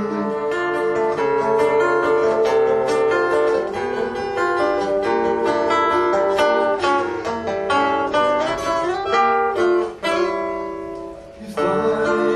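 Acoustic guitar playing a fingerpicked instrumental passage of single picked notes over chords, with no singing. About ten seconds in the playing drops away to a fading held chord, then fuller playing comes back in just before the end.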